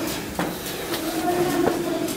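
A person's voice holding a low, steady note for about a second and a half, with a couple of short sharp clicks.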